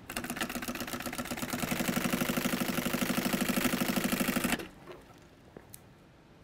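Juki industrial sewing machine running at speed, stitching with a rapid, even clatter over a steady hum, then stopping abruptly about four and a half seconds in.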